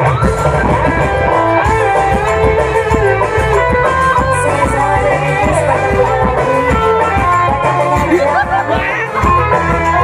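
Loud live music from a burok troupe's band: a melody line over a steady drum beat, running without a break.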